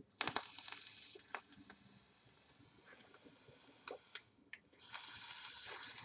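Vape coil in a dripper atomizer firing as it is drawn on: a hiss with crackling from the juice-soaked coil for about two seconds, then scattered faint ticks. Near the end, a steady hiss of vapor being exhaled.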